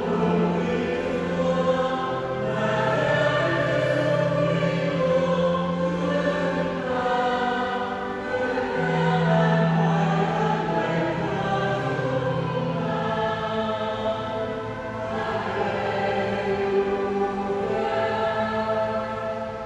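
A choir singing slowly in long held notes, several voices together.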